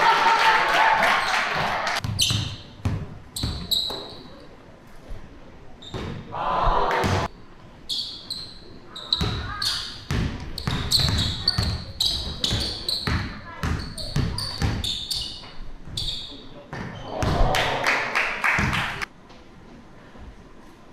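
Basketball dribbled on a hardwood court floor during a one-on-one game, a run of sharp bounces with sneakers squeaking between them.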